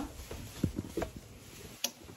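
A few light knocks and clicks, about three in two seconds, the sharpest near the end, from objects being handled on a counter.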